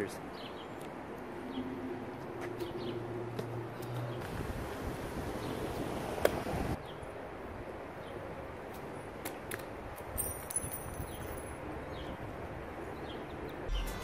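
Outdoor background with a faint steady low hum for the first four seconds, a brief knock about six seconds in, and birds chirping around ten seconds in.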